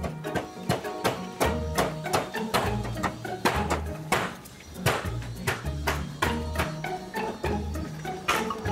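Background music with a repeating bass line, over which come many sharp taps: a hammer striking a steel punch to drive a clock movement out of its wooden case.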